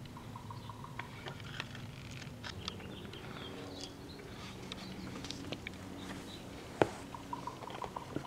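Faint background with a low steady hum, scattered light clicks and a few brief high chirps. A single sharper click comes near the end.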